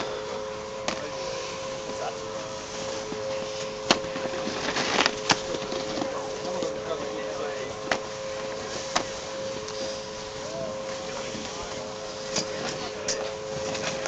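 A steady machine hum holding two close, unchanging tones, with scattered sharp clicks over an even background hiss.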